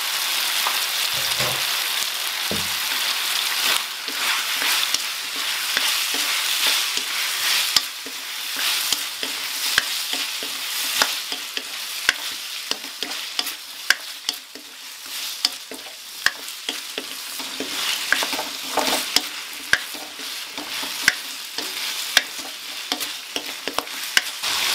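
Chicken feet and sour bamboo shoots sizzling as they are stir-fried in a metal wok, with a wooden spatula scraping and clicking against the pan. A couple of dull thumps come in the first few seconds.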